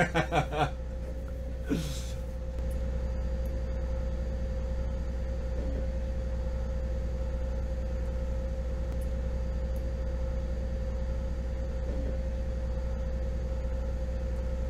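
Twin inboard engines of a motor trawler running steadily underway: an even low drone with a constant mid-pitched hum over it, a little louder from about two and a half seconds in.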